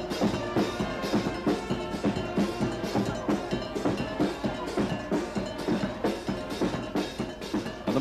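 Bahamian brass band playing a fast, double-time calypso, with brass over a quick, steady drum beat.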